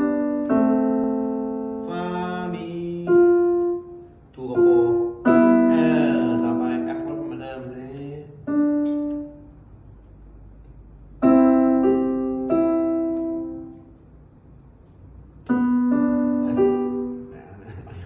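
Upright piano played in short phrases of struck notes and chords, each ringing and fading away, with pauses of a second or two between phrases.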